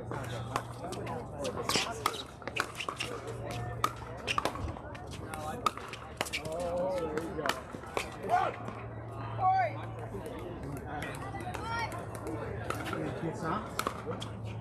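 Pickleball paddles striking the plastic ball: a string of sharp pops at irregular intervals through a rally, with people talking in the background.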